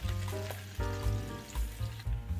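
Fresh butifarra pork sausage sizzling in hot olive oil in a nonstick frying pan over high heat.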